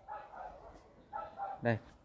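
A dog barking faintly, a few short barks.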